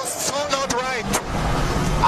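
Voices shouting and cheering in a grandstand, then a low engine rumble of a passing Formula 1 car that builds from about a second and a half in.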